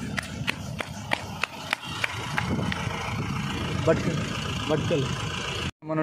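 Goods truck's engine running close by, with a quick run of sharp ticks, about three a second, over the first few seconds. The sound cuts off abruptly just before the end.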